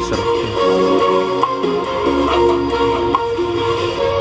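Music played over Bluetooth through a JBL EON ONE Compact portable PA speaker: a melody of held notes over a steady bass line.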